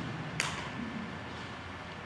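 A pause in speech: low, steady hall background noise with one sharp, short click about half a second in.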